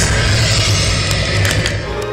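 Steady low rumble and hiss of travel noise inside a car's cabin.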